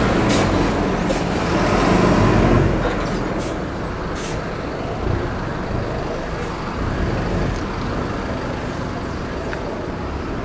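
City bus running close by, its diesel engine rumbling for the first few seconds and then falling away into general street noise. A few short sharp air hisses from its brakes are heard.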